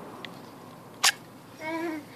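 A single sharp click about a second in as a TOPS BOB Fieldcraft knife is set against a stick of wood. A brief high-pitched voice follows near the end.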